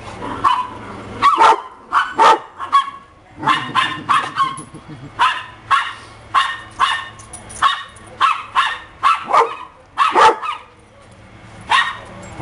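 Dogs barking in quick, repeated sharp barks during rough play, about two a second, with a short pause near the end.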